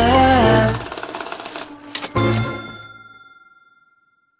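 Ending of a hip-hop/R&B track: the beat with held chords and bass stops under a second in. A quieter stretch of fast ticking follows, then a last hit with a single ringing note that fades out to silence near the end.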